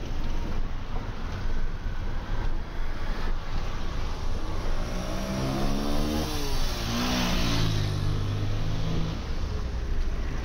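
Street traffic with a steady low rumble. From about five seconds in, a car drives close past, and its engine note falls in pitch as it goes by, with a rush of tyre and air noise at the moment it passes.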